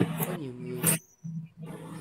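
A man laughing, the laughter ending about a second in, then a brief low voiced sound.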